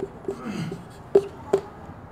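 Dry-erase marker writing on a whiteboard: a few short, separate strokes, each a brief squeak or tap, with one low drawn-out sound about half a second in.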